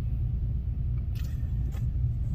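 Steady low rumble of a vehicle's idling engine heard inside the cabin, with a couple of faint brief sounds a little past the middle.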